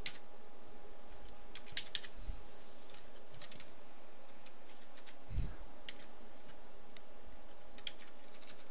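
Computer keyboard being typed on: a few scattered keystrokes with pauses between them, over a steady faint hum. A short low thump comes about five seconds in.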